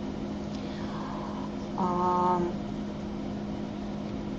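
Steady low electrical hum on a headset microphone line. About two seconds in comes a short, level tone of several pitches that lasts under a second.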